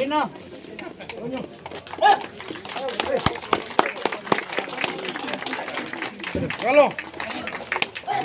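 Scattered hand clapping from a small crowd, irregular and uneven, with voices calling out over it.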